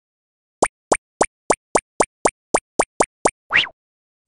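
Cartoon sound effects for an animated intro: a run of eleven quick, evenly spaced pops, about three or four a second, then a short rising swoop just before the end.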